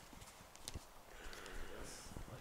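Quiet background with a few faint, sharp clicks and light taps.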